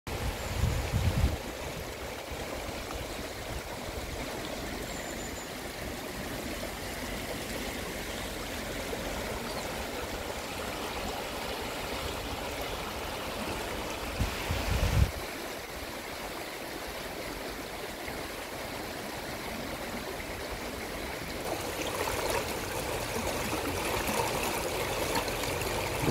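Shallow, clear stream rippling and rushing over rocks, a steady running-water sound that grows louder and brighter in the last few seconds. Two brief low rumbles cut in, one at the start and one about halfway through.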